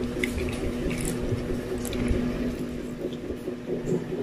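Close-miked chewing of a soft white-bread sandwich, wet and squishy, with many small mouth clicks scattered through.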